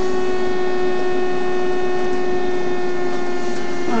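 A steady, unchanging pitched hum with a row of overtones above it, at an even loudness throughout.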